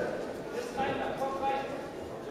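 Indistinct voices of people around a boxing ring calling out, with one drawn-out call around the middle, over the general din of the hall.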